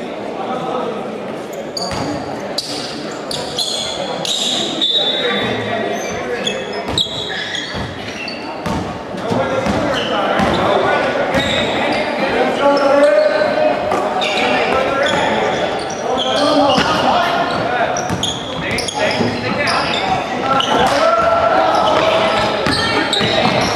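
Basketball bouncing on a wooden gym floor, a scatter of short knocks, under the voices of players and onlookers calling out, echoing in a large hall.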